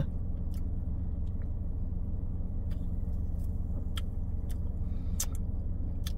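Car engine idling, heard from inside the cabin as a steady low hum, with a few faint clicks.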